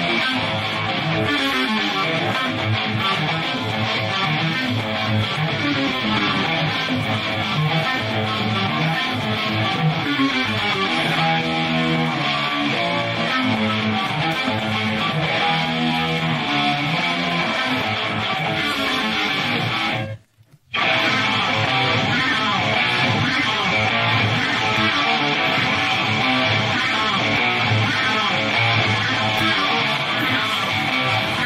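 Isolated distorted electric guitar playing fast thrash metal riffs, with no other instruments. About twenty seconds in the playing breaks off for about half a second, then resumes.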